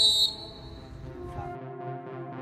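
A short, loud, high-pitched whistle blast at the start, typical of a referee's whistle, dying away within about a second. Background music with held notes then builds.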